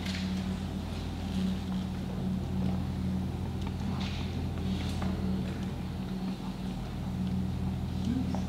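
Steady low electrical hum throughout, with faint scratchy strokes of a marker writing on a whiteboard.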